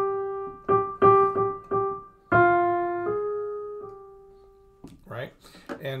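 Piano playing a short melody one note at a time, each note struck and left to ring and fade. The last note dies away about five seconds in, just before a man starts speaking.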